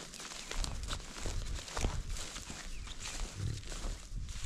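Bison cow grunting low and faintly, a sign that she is stressed at being separated from the herd. Footsteps swish through tall grass alongside it.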